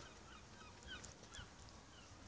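Near silence, with four or five faint short chirps from distant birds.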